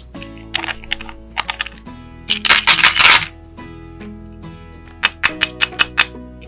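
Clicking and rattling of small plastic toy pieces and candy-coated chocolates being handled, with one loud, dense rattle about two and a half seconds in and a quick run of sharp clicks near the end. Soft background music plays underneath throughout.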